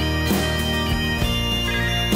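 Pipe band bagpipes playing a slow tune over their steady drones, with acoustic guitars strumming beneath, in a wordless instrumental passage of the song.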